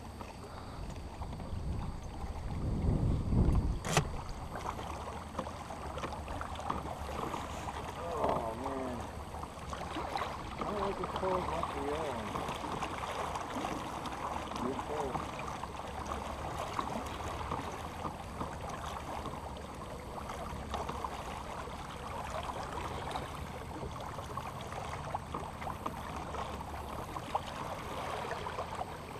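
Steady wind and water noise around a small fishing boat on a lake, with a low rumble of wind on the microphone about two to four seconds in that ends in a sharp click.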